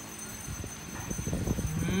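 A woman's low, creaky 'mmm' starting about halfway through, settling into a steady hummed tone near the end.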